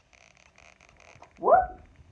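A person's short, high exclamation, 'whoop!', rising sharply in pitch about one and a half seconds in.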